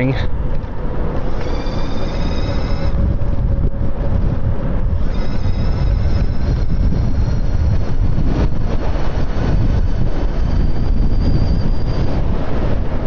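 Wind rushing over the microphone with tyre and road noise from an e-bike at speed. A high-pitched electric whine from the CYC X1 Stealth mid-drive motor comes and goes over it several times.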